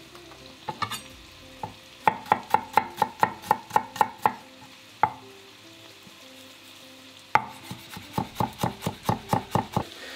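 Chef's knife mincing garlic on a plastic cutting board: quick chops of the blade against the board, about four a second, in two runs, one starting about two seconds in and another about seven seconds in, with a single chop between them.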